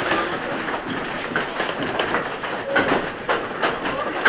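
Wooden machinery of a working Dutch windmill running: a continuous rumbling clatter with knocks repeating every half second or so.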